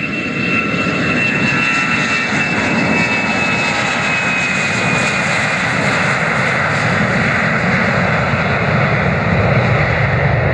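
A Fokker 100's two rear-mounted Rolls-Royce Tay turbofans at takeoff thrust as the jet rolls past down the runway. A high fan whine fades over the first few seconds and gives way to a loud, steady roar.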